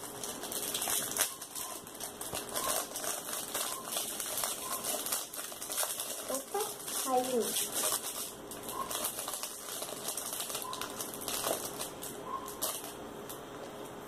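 Small plastic packet crinkling and rustling as it is opened by hand, with many small clicks as tiny plastic charms are handled and set down on a tabletop.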